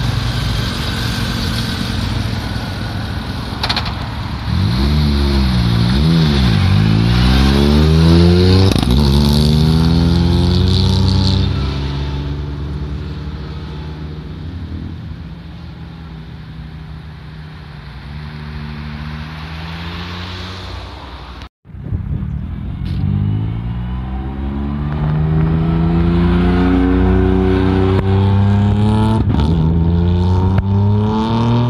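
Road traffic passing close by: a motorcycle and cars go past one after another, their engine notes falling in pitch as each passes, loudest about eight seconds in. After a sudden cut about two-thirds through, a rally car's engine rises in pitch and grows louder as it approaches on the public road.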